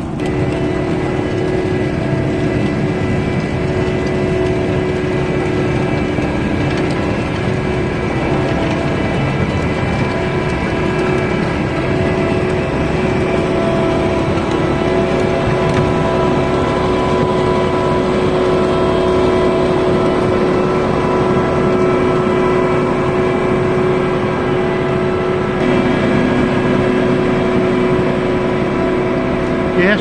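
Vervaet Q-series self-propelled sugar beet harvester working as it lifts beet. Its engine and drives give a steady drone with a constant whining tone over the clatter of the machinery.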